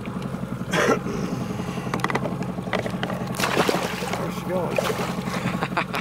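Outboard motor running steadily at slow trolling speed, a constant low hum.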